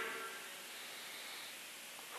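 Faint steady hiss of room tone and recording noise in a pause in speech, with the tail of a man's voice dying away in the room's reverberation at the very start.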